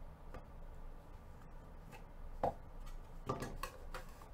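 Trading cards and foil packs being handled on a table: a few short taps and clicks, the sharpest about halfway through and a quick run of them near the end, over a low steady hum.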